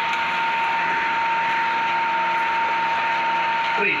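Built-in label printer on a weighing scale's indicator printing and feeding a sticker: a steady mechanical whir with a constant whine, over a continuous background hiss.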